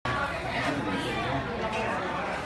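Several people talking at once: indistinct chatter.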